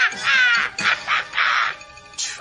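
Cartoon soundtrack music with a run of shrill, raspy sounds, some gliding down in pitch, that fade out shortly before the end.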